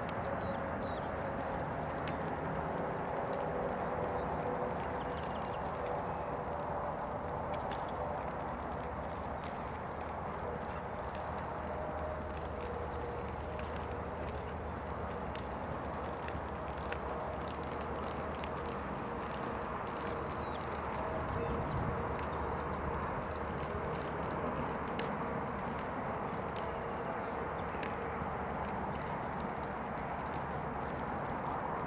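Hoofbeats of a Rocky Mountain Horse gelding in his four-beat ambling saddle gait on a dirt arena footing, a steady run of soft hoof strikes.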